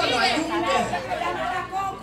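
Speech only: several people talking over one another in a large room.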